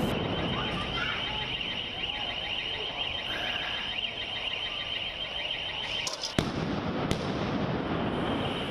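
Street-clash noise: a steady, high-pitched alarm tone sounds over a rumble of crowd and street noise, then stops about six seconds in. Sharp bangs follow, the loudest just after the tone stops and another about a second later.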